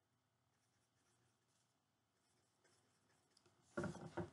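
Faint scratching of a Sharpie marker drawing short strokes on construction paper. Near the end, a sudden louder knock and rustle of the paper being handled.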